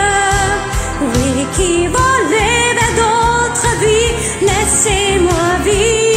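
A voice singing French lyrics over a pop backing track, as a karaoke cover: one continuous sung melody with gliding notes.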